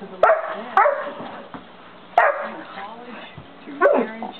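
St. Bernard puppy barking loudly, four barks: one about a quarter second in, a second half a second later, a third a little past two seconds in, and a fourth near the end. These are play barks, made to get the cat to play.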